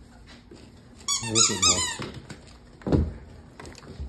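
French bulldog puppy giving a quick run of high-pitched squeals lasting about a second, followed by a single thump about three seconds in.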